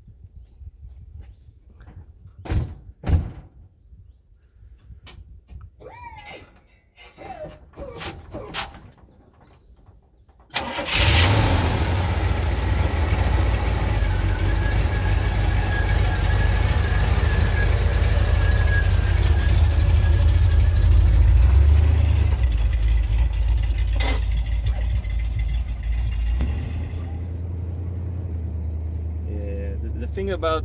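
Two car doors thump shut, then about ten seconds in the 1973 Cadillac Fleetwood Brougham's 472 V8 fires up suddenly and runs loudly, easing off a little near the end.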